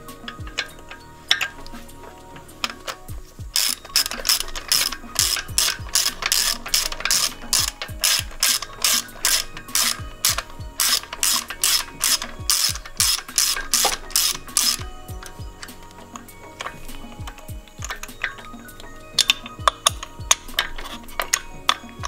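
Hand ratchet clicking in quick, even strokes, about three clicks a second, as a spark plug is screwed in through a socket extension. The clicking stops about two-thirds of the way through, and a few scattered clicks follow near the end.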